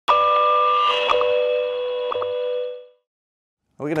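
Short electronic intro sting for an animated logo: a held chord of steady tones with a few clicks, fading out about two and a half seconds in. A man starts speaking near the end.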